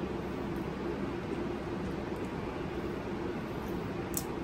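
Steady room noise: an even hiss with a low hum beneath it, and no distinct sounds.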